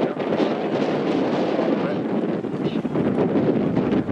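Wind buffeting the camera microphone, a steady rush, with a murmur of voices beneath it.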